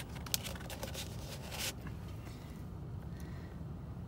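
Handling noise from a paper coffee cup being turned in the hand: a cluster of small clicks and rustles in the first second and a half, then only a steady low car-cabin hum.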